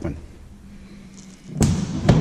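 Single sharp thump of an F1 Rocket aircraft's canopy being swung shut, about one and a half seconds in, followed by a few smaller knocks as its latch handle is worked.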